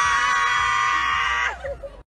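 A young woman screaming one long, steady high note that falls away and breaks off about one and a half seconds in.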